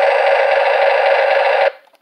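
Electronic sound effect from a battery-powered toy semi truck's sound chip, set off by its bottom button: a loud, steady buzzy tone that cuts off suddenly just before the end.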